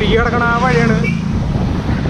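Wind buffeting the microphone of a moving bicycle, a dense low rumble throughout. A voice sings a short phrase with one long held note during the first second.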